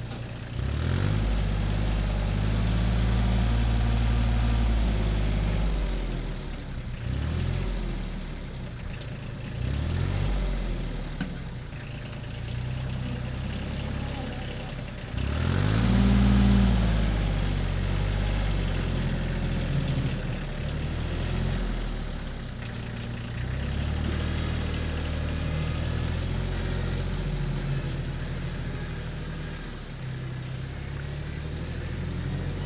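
Compact tractor engine working a front loader, its pitch rising and falling over and over as it revs up and drops back. It is loudest about halfway through.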